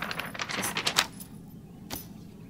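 Paper rustling and crinkling as a printed picture is waved close to the microphone, a dense run of crackles that stops about a second in, followed by one sharp click near the end.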